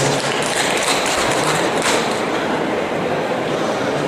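Audience applauding, a steady dense patter of many hands clapping.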